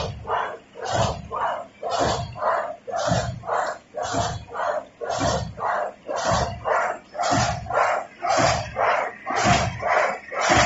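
High-speed paper straw making machine running at speed, its mechanism working in an even beat of about two pulses a second.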